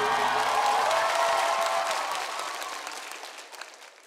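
Audience applauding over the fading last notes of the music; the applause dies away near the end.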